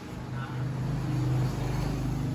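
A0 wide-format copier's motors running with a steady low hum, swelling up about half a second in.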